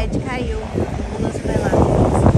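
Voices of onlookers talking and calling out, not clear speech, over wind buffeting the microphone; the wind rumble grows louder in the second half.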